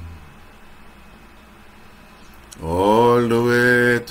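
A man singing a gospel chorus solo, with no accompaniment: a pause of about two and a half seconds with only faint hiss, then his voice comes in on a long, steadily held note.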